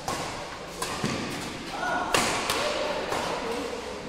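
Badminton rackets hitting a shuttlecock in a fast doubles rally: a handful of sharp smacks, the loudest a little past halfway.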